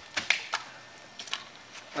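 A string of about seven short, sharp clicks and knocks at irregular spacing, bunched in the first half second and again near the end.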